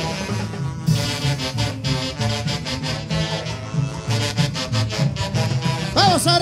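A live huaylarsh (huaylas) band playing an instrumental passage with no singing: a saxophone section holding sustained chords over a repeating low line and steady timbales and cymbal strokes.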